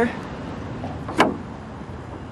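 Vacuum suction mount's release tab pressed, letting air under the cup to break the seal: a single short pop about a second in.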